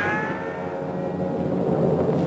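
Sound effect of a speeding bullet: a whining tone that falls slowly in pitch and fades over about a second and a half, over a steady low rumble.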